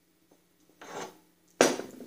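Metal wheel hub of a Snapper rear-engine rider scraping as it slides off the axle shaft, then a sharper knock about a second and a half in as it is set down on the workbench.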